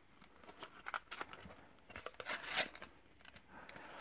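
Shopkins blind-box packaging being torn and crinkled open by hand: faint, scattered rustles and small clicks, with the loudest tearing a little past halfway.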